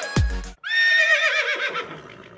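Electronic music cuts off abruptly about half a second in. A horse then whinnies for about a second and a half, its pitch quavering and dropping as it fades out.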